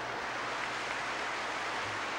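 Studio audience applauding, an even, steady clatter of many hands.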